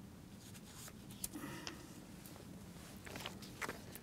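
Quiet room tone with a few faint clicks and soft rustles from handling at a lectern.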